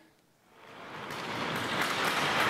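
Ice skate blades carving and scraping on rink ice, a hiss that fades in about half a second in and grows steadily louder.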